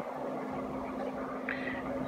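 Quiet kitchen room tone with a faint steady low hum, and a brief soft hiss about one and a half seconds in.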